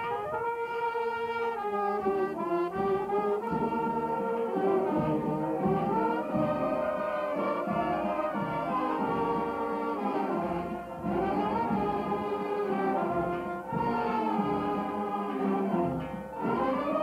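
Oaxacan village brass band (banda de música) of trumpets, trombones and sousaphone playing a tune, with brief breaks between phrases.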